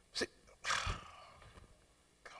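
A man's short breathy vocal sound, a huff of breath close to a microphone: a brief sharp hiss near the start, then a longer rough exhale with a low pop of breath on the mic about three-quarters of a second in.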